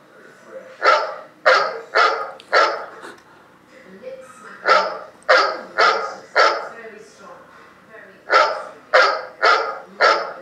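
A dog barking in three groups of four sharp barks, the groups coming evenly about every four seconds.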